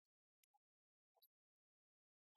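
Near silence, broken only by a few very faint, brief blips.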